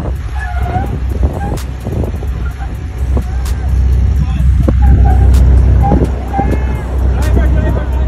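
Toyota Land Cruiser 80 Series engine pulling at low revs as the truck crawls up a steep slickrock ledge, a steady low rumble, with people's voices calling in the background.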